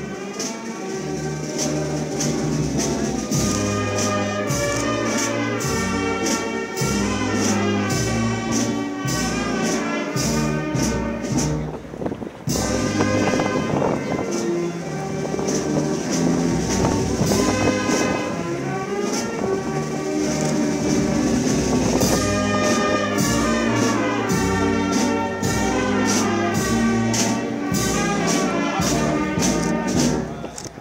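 Brass band playing, trumpets and trombones carrying the melody over regular drum beats, with a brief drop in level about twelve seconds in.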